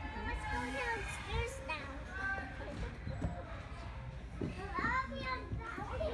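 Indistinct chatter of several voices, children's among them, echoing in a large gymnasium over a steady low rumble.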